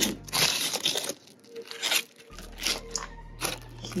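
Aluminium foil wrapper crinkling as a burger is unwrapped: a loud run of crackling in the first second, then a few shorter crinkles about a second apart.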